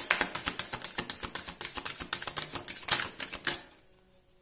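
A deck of oracle cards being shuffled by hand: a fast, dense run of card clicks that stops about three and a half seconds in.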